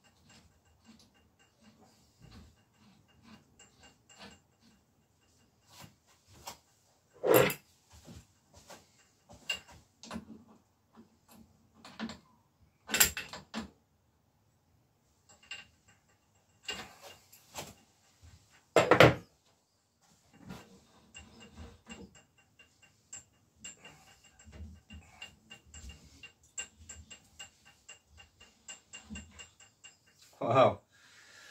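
Small metal-on-metal clicks and ticks of a spanner working a crank extractor at a bicycle bottom bracket to pull a crank arm off its axle, with three louder knocks spread through.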